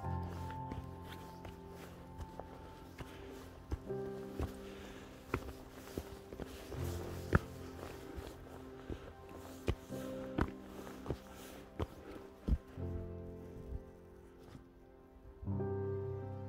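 A hiker's footsteps on a rocky forest path, a step about every 0.7 seconds, under soft background music with held notes; the music drops out briefly near the end.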